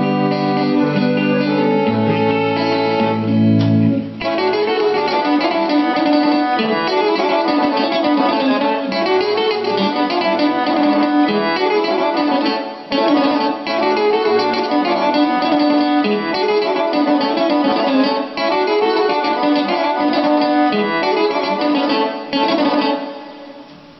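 Piano accordion and electric guitar playing a fast čoček instrumental. The first four seconds are long held chords, then the pair break into quick, dense running lines.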